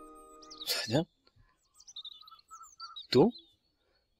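Birds chirping in short, repeated notes in the background, as a held music chord fades out at the start. Two brief spoken sounds fall about a second in and near the end.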